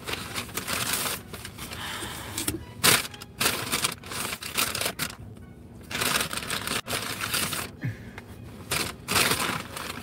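A paper bag and fast-food wrappers rustling and crinkling as they are handled, with irregular crackles and light knocks.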